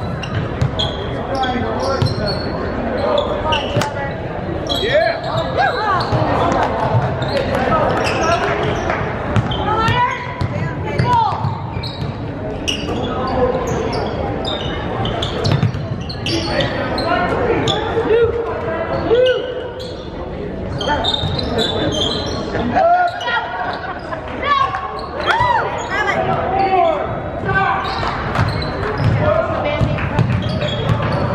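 A basketball being dribbled on a hardwood gym floor during live play, with sneakers squeaking and indistinct shouts and talk from players, coaches and spectators, all echoing in the gymnasium.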